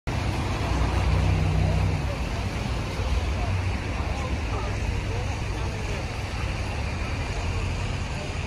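Outdoor city ambience: a steady low rumble, heaviest in the first two seconds, with indistinct voices of people around.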